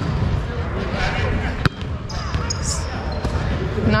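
A volleyball being hit once with a single sharp smack about one and a half seconds in, over the steady echoing noise of a gym full of players.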